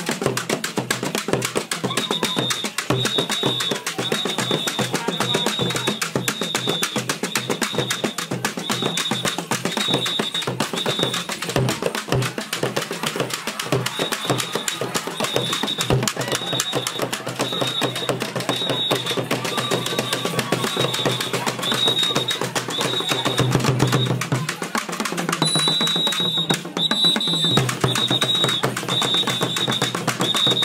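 Acholi traditional dance music: fast, steady drumming with a short high note repeated over it in runs.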